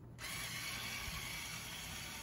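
LEGO Vestas wind turbine's small electric motor and gear train running steadily, turning the rotor: a continuous mechanical whir that starts just after the beginning.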